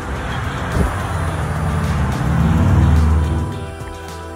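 A motor vehicle going past, its noise building to a peak about three seconds in and then fading away. Background music plays underneath.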